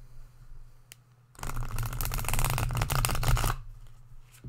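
Tarot deck being riffle-shuffled by hand: a dense, rapid flurry of card flicks lasting about two seconds, starting about a third of the way in, after a single light click.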